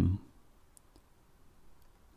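The narrator's last word trails off, then a pause of near silence with two faint, brief clicks, about a second apart.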